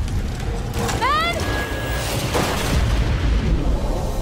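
Film soundtrack of deep rumbling booms under music, with a short rising-and-falling cry about a second in.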